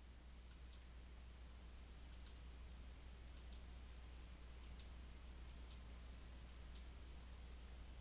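Faint computer mouse clicks, coming in quick pairs about six times, as on-screen checkboxes are toggled; between them near silence with a low steady hum.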